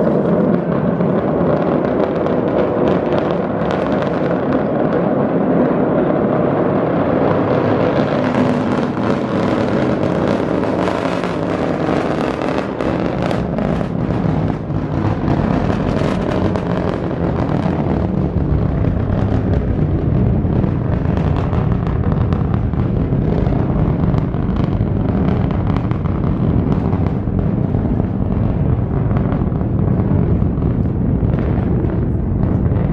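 Rocket launch heard from a few miles off: a loud, continuous crackling roar from the engines. Its deep rumble builds over the first several seconds and then holds steady.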